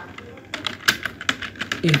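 Computer keyboard typing: a quick run of keystrokes through the second half, the last of them entering a command.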